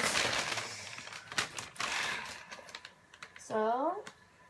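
Plastic shopping bag rustling and crinkling as an item is pulled out of it, with a few light clicks and taps; the rustling dies down about two seconds in. A short vocal sound near the end.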